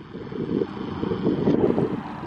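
Wind buffeting the camera microphone: a gusty low rumble that grows louder about halfway through.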